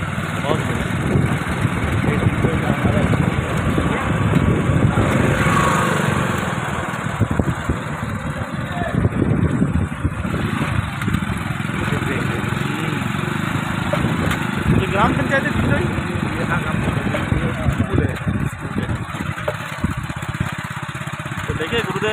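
Motorcycle engine running as the bike is ridden along, heard from the pillion seat, with a heavy, fluctuating rumble of road and air noise.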